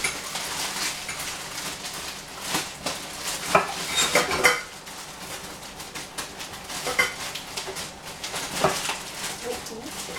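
Kitchen dishes and utensils being handled, with several scattered clinks and knocks that are busiest about four seconds in.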